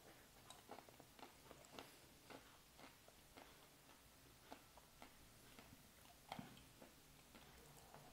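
Faint crunching of a chewed wafer ice-cream cone with hazelnut brittle: a run of small, irregular crackles that grows sparser after a few seconds, with one louder crack near the end.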